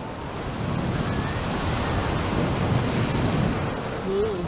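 Wind noise from airflow buffeting the microphone of a camera on a paraglider in flight: a steady rushing noise that grows a little louder about half a second in.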